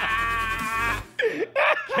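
A sound effect played from a soundboard button: one steady, held, moo-like tone lasting about a second that cuts off abruptly, followed by voices.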